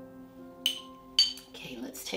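Two sharp clinks about half a second apart, each with a brief ringing tone: a stone gua sha tool being set down on a hard surface. Soft piano background music plays under it.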